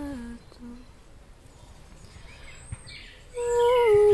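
A woman's wordless light-language singing, hummed in long held notes. A held note slides down and stops about half a second in, and a brief short note follows. After a pause with a faint bird chirp, a new, higher held note begins near the end.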